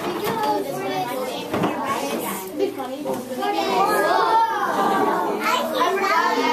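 A group of young children chattering and calling out all at once, many voices overlapping, growing louder about four seconds in.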